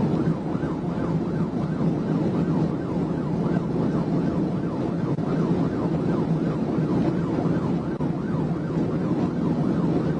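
Police cruiser's electronic siren in a rapid yelp, its pitch sweeping up and down several times a second without a break. Under it runs a steady rush of road and wind noise from the car travelling at about 140 mph.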